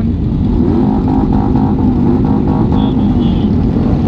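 Motorcycle engines idling and running together in a crowd of bikes: a steady low hum with a wavering engine note. Partway through comes a short run of evenly spaced higher pulses.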